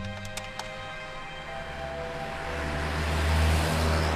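Background music, with a few quick clicks of a desk telephone's keypad being pressed in the first half second. Then a car drives past, its engine and tyre noise swelling to a peak near the end.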